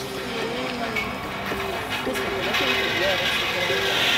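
Pigs screaming in a gas stunning chamber, played back through a phone's speaker, over a steady machine noise that grows louder near the end.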